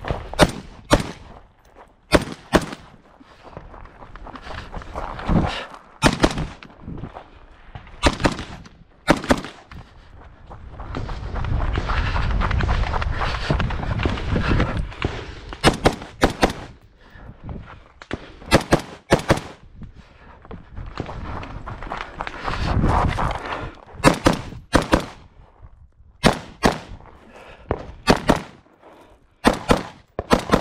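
Semi-automatic rifle shots fired mostly in quick pairs about half a second apart, in strings separated by pauses and by stretches of steadier noise.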